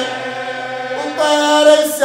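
A man's voice chanting an Arabic religious lament, holding long steady notes; a louder held note comes in about a second in.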